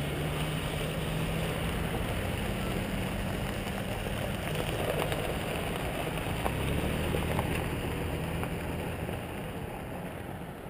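Engines of a pickup truck and an SUV running close by, a steady low hum that weakens near the end as the vehicles drive off along the gravel road, over a rough hiss of gravel crunching underfoot.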